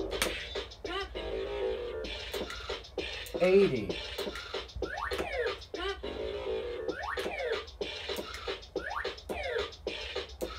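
Bop It toy's electronic game music with a steady beat, overlaid with quick scratch-like effects and repeated falling sweeps, as the toy keeps a running game going. There is a louder swooping tone about three and a half seconds in.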